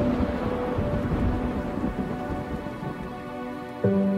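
Falling water like a heavy downpour splashing into a pond, with a deep rumble, over soft background music. The noise cuts out abruptly just before the end.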